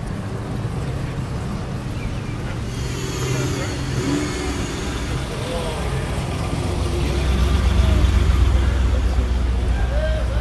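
Cars, vintage Cadillacs among them, driving slowly past close by in a line. Their low engine rumble grows louder in the second half as a car passes near.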